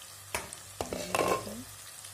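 A spoon stirring a spiced onion masala in a non-stick kadhai, knocking against the pan a few times, with the masala sizzling in hot oil. The masala is frying well.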